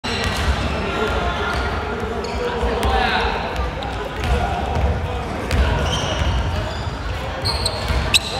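Basketballs bouncing on a hardwood gym floor, with sharp thumps here and there over indistinct voices, all echoing in a large sports hall. A few short high squeaks come near the end.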